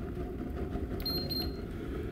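Homemade waste-oil stove burning with a steady low rumble, and a handheld infrared thermometer giving two short high beeps about a second in as it is switched to the Fahrenheit scale.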